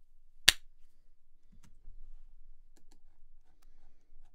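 A single sharp click about half a second in, the short test hit being recorded to show the monitoring-latency offset, followed by faint scattered clicks.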